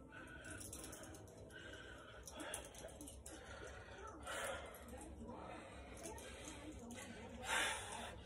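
A man breathing hard through a resistance-band exercise, with a sharp, hissy exhale about four seconds in and another near the end, and softer breaths between.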